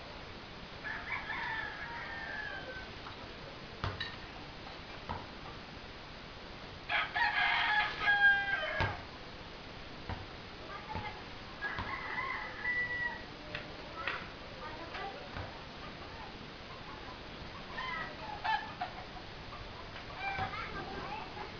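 Three long, drawn-out pitched animal calls, each falling in pitch at the end, the loudest about seven seconds in, with a fainter one near the end. A few sharp knocks sound between them.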